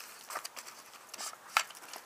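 A Smith & Wesson M9 bayonet being drawn from its scabbard: light scraping and handling clicks, with one sharp click about one and a half seconds in.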